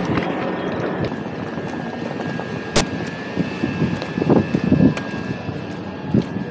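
Railway platform ambience: a steady mechanical hum from electric trains standing at the platform, with a faint steady high whine coming in about halfway. A single sharp click sounds about three seconds in, and a few soft low thumps follow.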